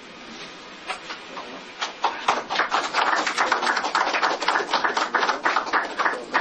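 People applauding: a dense, irregular run of claps that starts about two seconds in and keeps going.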